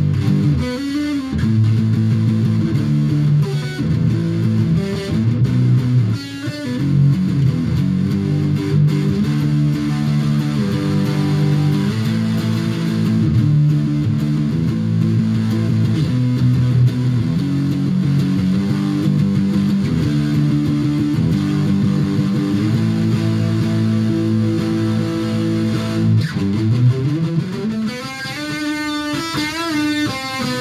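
Strat-style electric guitar played through an amplifier, chords strummed and let ring. Near the end the pitch glides upward, then wavers.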